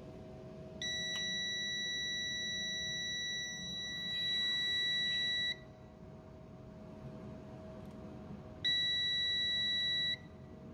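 Pro'sKit MT-1710 digital multimeter's continuity beeper sounding a steady high-pitched beep, showing a closed circuit (about 23 Ω) between its probes on the steam-generator heater terminals. One long beep of about four and a half seconds starts about a second in, and a second, shorter beep starts near the end.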